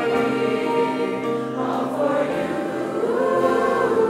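Choir of mixed teen voices, boys and girls, singing in sustained chords, moving to a new chord about halfway through.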